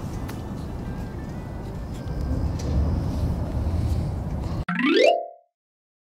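Campfire burning in a small stainless-steel fire pit: a steady low rush of flames with a few sharp crackles. Near the end a short rising slide-whistle sound effect plays, then the sound cuts off.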